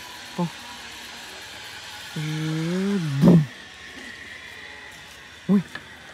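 A person's drawn-out vocal sound: a low held note just under a second long that drops in pitch and ends in a sharp knock, over steady outdoor background. A faint high whine follows for about two seconds.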